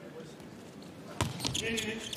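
Volleyball served: a sharp smack of the hand on the ball about a second in, followed by a few quicker knocks and some voices, ringing in a large arena over a faint crowd murmur.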